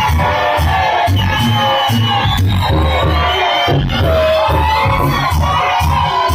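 Live dancehall music played loud through a club PA, with a heavy, broken bass beat and voices over it, and a crowd shouting and cheering along.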